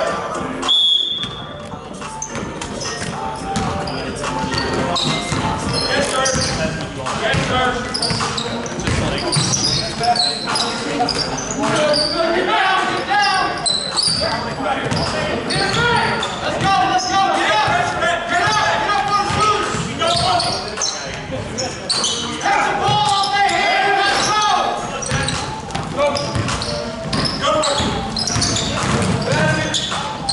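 Basketball game on a hardwood gym floor: a basketball bouncing, with indistinct players' voices ringing around the large hall.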